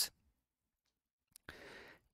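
Near silence, then about one and a half seconds in, a faint click and a short breath drawn in close to the microphone.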